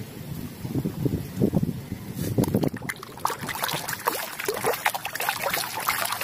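Muddy water sloshing and trickling in a plastic basin as a plastic toy gun is swished and rinsed by hand. Irregular splashes and drips, busier in the second half.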